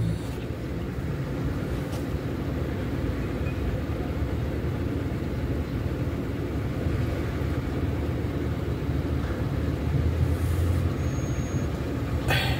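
Road traffic at a junction: a low, steady engine rumble from vehicles idling and crossing while traffic waits at a red light, swelling slightly about ten seconds in as a vehicle goes by.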